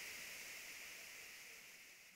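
Near silence: a faint, steady hiss of room tone, fading down toward the end.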